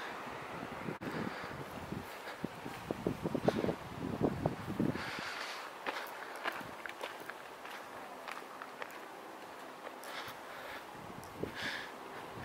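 Footsteps of a person walking, a loose run of irregular steps that are strongest in the first half and fainter later.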